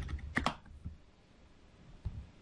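Computer keyboard keystrokes typing in a number: a few quick clicks about half a second in, then one more shortly after.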